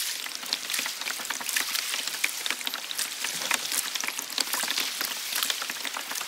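Water splashing and lapping, a steady patter of many small irregular splashes with no pitched sound in it.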